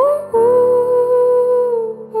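Soundtrack song: a singer's voice slides up into a note, then holds one long note over soft accompaniment, the pitch sagging slightly near the end.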